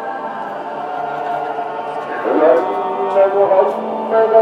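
Sound collage of sustained, choir-like droning tones, with a pitched call that bends up and down about two seconds in. The layers grow louder in the second half.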